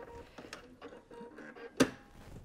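Quiet handling of a quilt piece as it is pulled from the sewing machine, soft small ticks and rustles, with one sharp click near the end.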